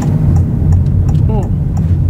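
Steady low road and tyre rumble inside the cabin of a Honda e electric car as it drives through a turn, with no engine note, together with faint repeated ticks of the turn signal. A brief voice sound comes a little past halfway.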